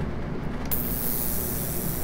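GemOro ultrasonic jewelry cleaner switching on about two-thirds of a second in, then running with a steady high hiss from its tank of cleaning fluid: the ultrasonic shaking action of the clean cycle.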